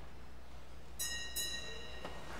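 A small bell struck twice in quick succession, about a second in, each strike ringing on with a bright, high, metallic tone: a sacristy bell signalling the start of Mass.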